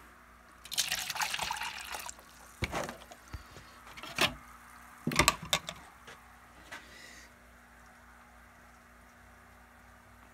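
Water poured from a plastic jug into a plastic Solo cup for about a second, starting about a second in, followed by three sharp knocks over the next few seconds as the cup and pH pen are handled.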